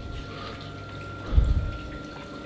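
Water running and trickling in a reef aquarium's sump, under a steady thin whine. A dull low thump about one and a half seconds in.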